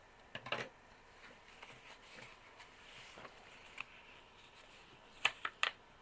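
Paper and notebook being handled on a tabletop: faint rustling, with a couple of light clicks about half a second in and a quick run of sharper clicks near the end.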